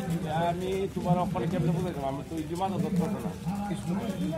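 Men's voices calling out and talking in a walking group, without clear words.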